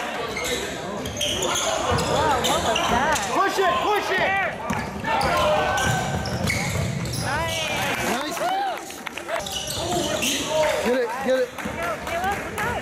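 Live basketball play on a hardwood gym floor: many short sneaker squeaks rising and falling in pitch, with a ball dribbling.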